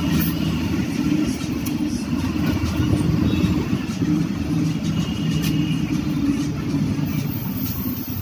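Engine and road noise of a moving bus, heard from on board through an open window: a steady low rumble.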